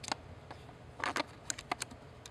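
Light clicks and taps from a Delkin SensorScope loupe being handled and seated against a Nikon D3X's open lens mount. There is one tick near the start, then a quick cluster of about six short ticks in the second half.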